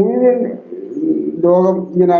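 A man talking on a recorded phone call. He draws out one wavering vowel near the start, goes quieter for a moment, then carries on speaking.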